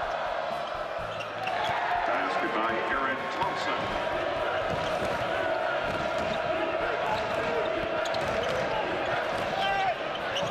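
A basketball dribbled on a hardwood court during live play, over a steady murmur of arena crowd and voices.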